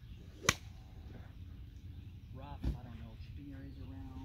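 A single sharp, loud click of a golf club striking a ball, about half a second in, with a brief ring. A softer, dull thump follows a couple of seconds later, under faint voices.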